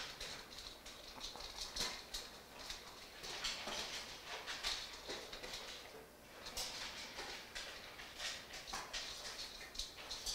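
Two dogs eating from their food bowls: rapid, irregular chewing and clicking, with a brief lull about six seconds in.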